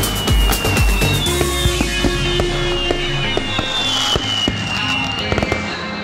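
Aerial firework shells bursting and crackling over music. The bursts come fast and heavy for the first second or so, then thin out to scattered reports.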